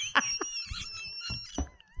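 A high, thin squealing laugh held on one pitch for about a second and a half, with short breathy catches, then a squeal falling in pitch near the end.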